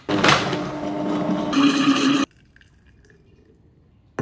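Countertop blender blending frozen fruit and milk into a smoothie. It runs for about two seconds, goes up in speed and brightness partway through, then cuts off suddenly.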